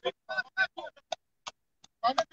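Men's voices shouting and calling in short, clipped bursts, with the sound dropping to silence between calls.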